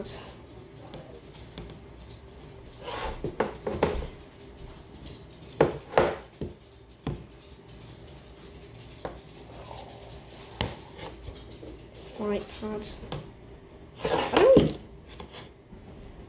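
Scattered knocks, clicks and rubbing of an LED drawing tracing pad and its packaging being unpacked and handled, with louder knocks about six seconds in and near the end.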